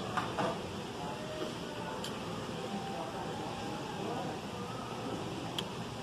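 Restaurant dining-room ambience: a steady background hum with faint, indistinct voices, broken by a few light clicks of a fork against a plate near the start, about two seconds in and near the end.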